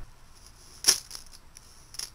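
Handful of sand dropped into a cut-down plastic bottle onto a layer of gravel: one sharp, short rattle about a second in, then a few faint ticks of grit against the plastic.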